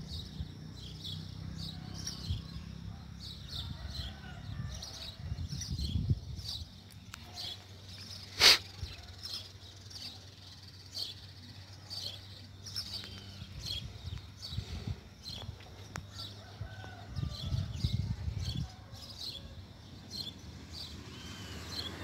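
Outdoor ambience of small birds chirping in short high calls throughout, with a low rumble in the first few seconds and again near the end. A single sharp click about eight and a half seconds in is the loudest sound.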